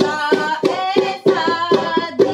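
A woman singing a Hindi devotional bhajan in praise of Hanuman, with a steady rhythmic percussion accompaniment of about three strokes a second.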